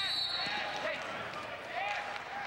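Referee's whistle blown once, a steady high tone lasting just under a second, stopping the wrestling action as a wrestler goes out of bounds. Voices from the arena crowd follow.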